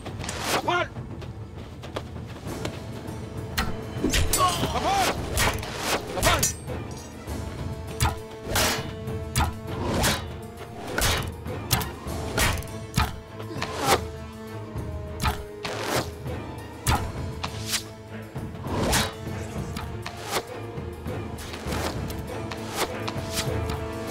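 Film battle sound of arrows loosed from bows and striking wooden shields: a rapid, irregular string of sharp thuds and whooshes, thickest from about eight seconds on, over a steady dramatic music score.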